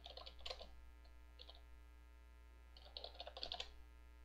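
Computer keyboard typing, faint: a quick run of keystrokes at the start, a couple around a second and a half in, and another run about three seconds in.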